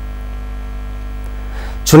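Steady electrical mains hum, a low drone with a ladder of fainter steady tones above it, unchanging throughout. A man's voice begins right at the end.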